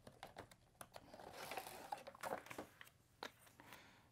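Faint rustling and scattered small clicks of a cardboard box and plastic packaging being handled as a dermal filler kit is unpacked, the rustling strongest in the middle.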